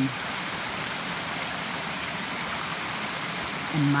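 Small woodland stream tumbling over rocks: a steady, even rush of running water.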